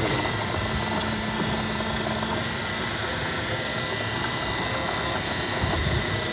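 A golf cart driving along: a steady running noise with a faint steady whine over it.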